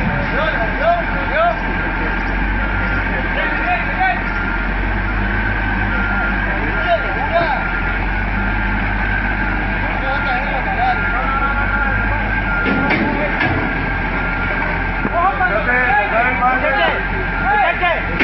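Heavy wheel loader's diesel engine running steadily under load as its bucket pushes against an overturned truck to lift it upright.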